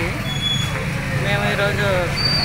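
A woman speaking Telugu, over a steady low engine rumble.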